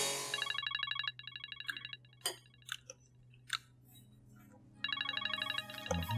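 Mobile phone ringtone: a rapid, trilling electronic ring heard twice, about four seconds apart, with a few light clicks of cutlery on a plate in between.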